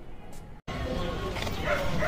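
A dog barking over outdoor street noise. The noise starts after an abrupt cut about half a second in, and short, pitched barks come near the end.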